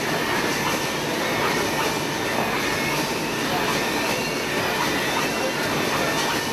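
Steady running noise of printing-plant machinery, an even roar with faint steady high tones over it. A voice says "thank you" with a laugh at the start.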